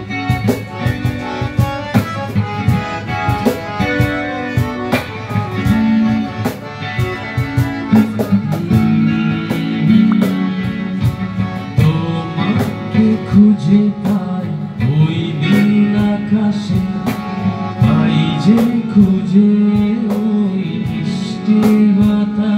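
Electric guitar playing a song over a steady drum beat, with a man singing over it mostly in the second half.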